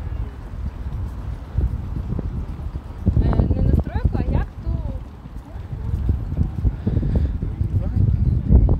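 Low, gusty rumble of wind and handling noise on a phone microphone carried along a promenade, with people's voices about three to four and a half seconds in.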